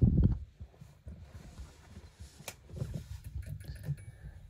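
A 2D preheat fluorescent lamp fixture being powered up. There is a low thump at the start, then low handling rumble, and a single sharp click about two and a half seconds in as the lamp starts and lights.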